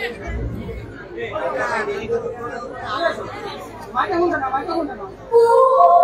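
A man's voice speaking lines on stage. About five seconds in, music with long held notes comes in.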